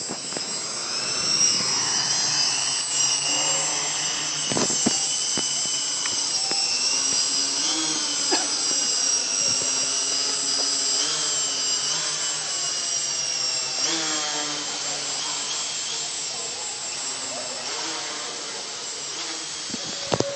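Hexacopter drone's six electric motors and propellers whining in flight. The pitch wavers up and down as it hovers and drifts overhead, and the sound grows louder over the first two seconds.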